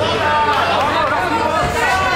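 Several people's voices talking over one another: crowd chatter.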